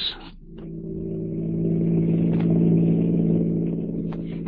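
Radio-drama sound effect of a car engine running at a steady cruising speed, a low even drone that fades in over the first couple of seconds.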